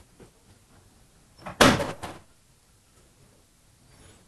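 One loud knock with a brief rattle after it, about a second and a half in, against faint room sound.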